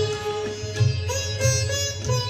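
An ensemble of sitars playing a melody together in plucked notes, with tabla drums keeping time in repeated low strokes underneath.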